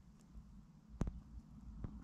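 Quiet with a low steady hum, broken by a single sharp click about a second in and a few fainter ticks.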